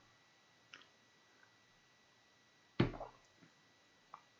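Quiet room with a faint click under a second in and a single sharp knock at about three seconds, handling noise from objects moved on a desk.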